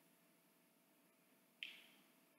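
Near silence: room tone, with one short, sharp click about one and a half seconds in.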